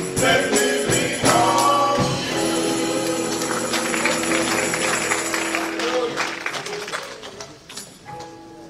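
Male gospel vocal group singing with a tambourine shaken in rhythm, holding a long final chord that fades out near the end as the song closes.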